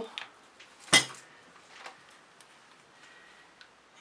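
A single sharp clink of hard objects knocking together about a second in, ringing briefly, followed by a few faint ticks.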